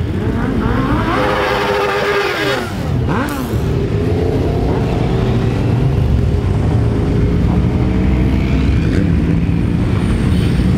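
A large pack of motorcycles pulling away and riding slowly past in a parade, many engines running together in a dense steady drone. In the first few seconds individual bikes rev up and ease off close by.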